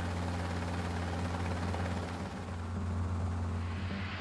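Steady low drone of a helicopter's engine and rotor, with an even hiss over it.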